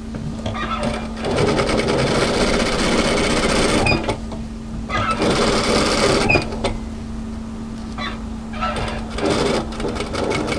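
Industrial lockstitch sewing machine edge-stitching a pocket onto an apron. It runs in three bursts of rapid needle strokes, stopping briefly between them, with a steady hum in the pauses.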